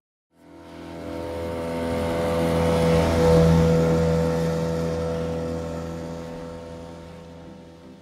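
A steady motor hum of several fixed tones that swells in from silence, peaks about three seconds in, and slowly fades away.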